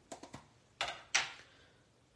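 Desk handling sounds as an acrylic stamp block and ink pad are picked up and moved: a few light clicks, then two sharper plastic knocks about a second in.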